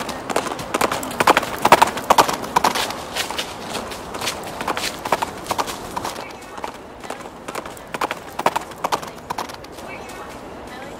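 Clip-clop of horse hooves at a trot, a series of sharp hoof strikes about two or three a second, thinning out near the end. It is a hoofbeat sound effect standing in for a horse being ridden.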